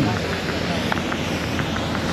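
Busy city street ambience: a steady wash of traffic noise with indistinct voices from passers-by, and a single thump at the very start.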